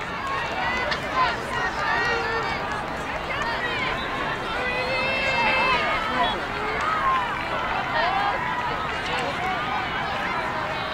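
Many overlapping girls' and women's voices shouting and calling out at once, high-pitched and unbroken, with one voice holding a long call about five seconds in.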